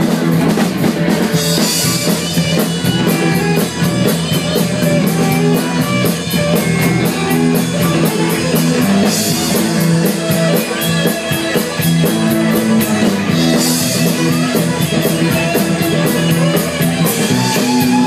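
Live rock band playing an instrumental stretch between verses: electric guitars, bass guitar and drum kit, with a steady hi-hat and crash cymbal hits about a second and a half in, around nine seconds and around thirteen seconds.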